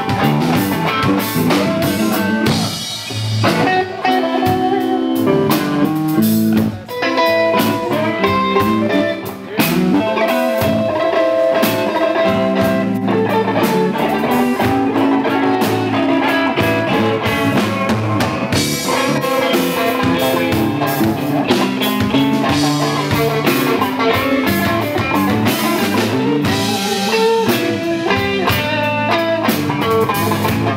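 Live blues band playing, with electric guitar taking the lead over drum kit and band accompaniment.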